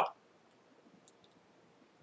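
A man's voice finishing a word, then near silence with a few faint clicks.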